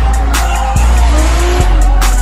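Hip-hop track with a heavy, stepping bass, mixed with drift cars' tyres squealing and engines running as two cars slide in tandem.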